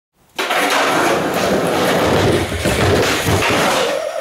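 Skateboard wheels rolling loudly over a plywood ramp, a dense rumble with irregular knocks and clatter, starting suddenly just after the start.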